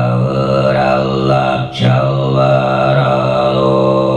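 Tuvan throat singing by a male voice: a steady low drone with bright overtones ringing above it, broken once by a short breath about two seconds in.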